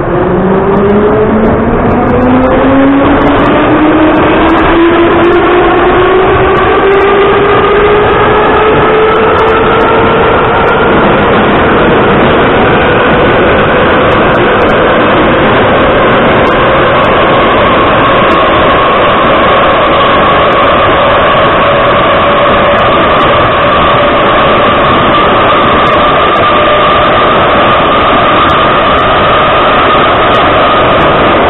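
Ezh3 metro car heard from inside the carriage as the train picks up speed: a whine rises in pitch over the first ten seconds or so, then levels off into a steady high whine. Loud rolling noise from the wheels and rails runs under it throughout.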